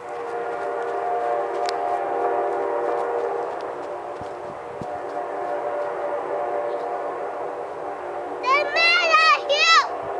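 Amtrak B32-8WH locomotive's air horn sounding a long, steady chord. It eases slightly about four seconds in and fades out about eight seconds in. Near the end, a high-pitched voice calls out in short wavering bursts.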